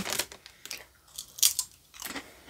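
Doritos Flamin' Hot Limón tortilla chip being chewed: a few brief, irregular crisp crunches.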